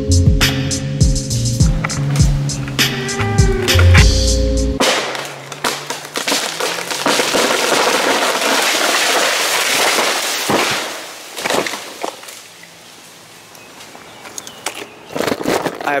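Background music with a steady beat cuts off about five seconds in. A loud, sustained crashing rush of a tree falling through the branches follows, with a few sharp cracks near its end. It then settles into quieter rustling and a few knocks.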